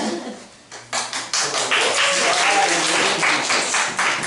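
A group applauding, starting about a second in, with voices and laughter mixed in.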